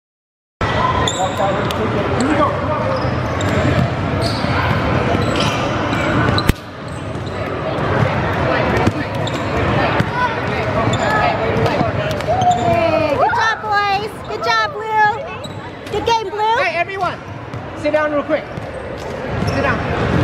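Crowded gym din: children's voices and chatter echoing in a large hall, with scattered sharp knocks like ball bounces. There is a cluster of high, wavering calls partway through. The sound starts abruptly just after the beginning.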